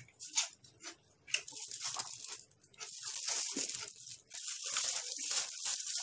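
Chewing a crunchy raw vegetable close to the microphone: a run of crackly bites and wet mouth clicks.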